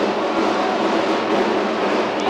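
A steady, even rushing noise of outdoor street-parade ambience on an old camcorder recording, with no single distinct sound standing out.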